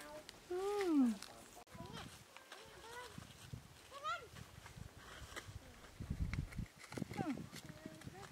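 Baby macaque giving short calls: one about a second in that rises and then falls in pitch, and a brief rising squeak around four seconds in. Rustling and low thumps of handling follow later.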